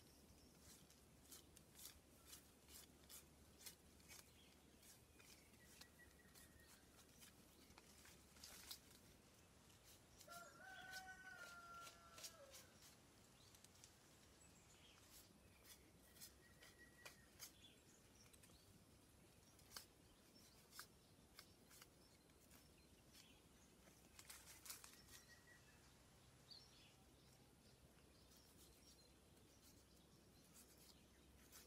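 Very faint sound overall, with scattered light clicks throughout. About ten seconds in, a rooster crows once, faintly, for about two seconds.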